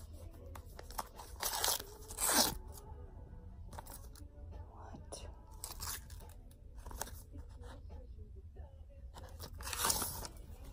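Paper rustling and crinkling as a white paper envelope is pulled open and unwrapped from a small key holder, with two louder tearing rustles about two seconds in and another just before the end.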